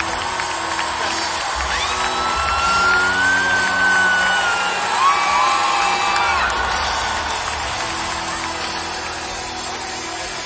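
Live band music in an arena heard from the stands, under crowd cheering, with one long drawn-out whoop from about two to six seconds in and a few shorter rising shouts near the middle.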